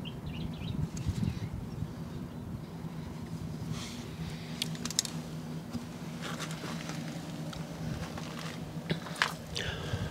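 Caulking gun laying a bead of MS-60 sealant along a caravan locker hatch seal: a few short sharp clicks from the gun, over a faint steady low hum.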